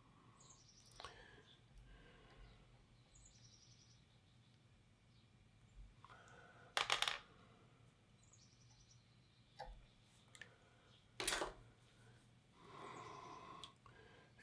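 Faint fly-tying handling sounds: a sharp snip about seven seconds in as small scissors cut the tying thread after the whip finish, then a second click and a few light ticks, with a brief soft rustle near the end.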